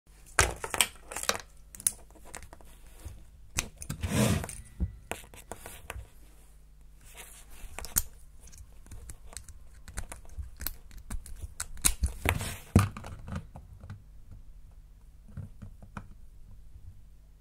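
LEGO plastic parts being handled and snapped together: a string of sharp clicks and clatters as a motor and a Technic frame are fitted onto the BOOST hub, with two longer rustling scrapes, about four seconds in and again just past twelve seconds.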